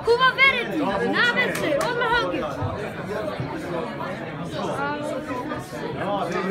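Several people talking at once in a large room, overlapping chatter with some high-pitched voices.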